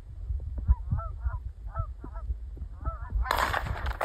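Geese honking as they fly in: short, repeated honks in small clusters, over a low rumble. Near the end a loud rush of noise comes in.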